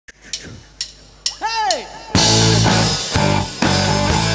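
About four drumstick clicks half a second apart counting the song in, with a short sound that rises and falls in pitch over the last two, then a full hard-rock band of drum kit, distorted electric guitars and bass comes in loudly about two seconds in.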